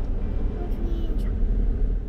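Steady low rumble of a car's engine and road noise heard inside the cabin.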